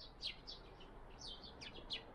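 Small songbirds singing faintly: a scatter of short, high chirps, each sliding down in pitch.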